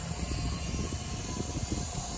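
Steady low rumble of background town traffic, with wind buffeting the microphone.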